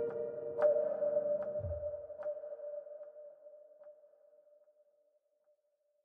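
The closing outro of a lo-fi hip hop track fading out. A held tone carries soft ticks about every 0.8 seconds and one short low note, and it dies away to silence about five seconds in.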